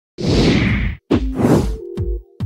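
Sound-effect swoosh, then, after a short break about a second in, a quick run of sharp whacks with brief pitched notes: stock motion-graphics sound effects.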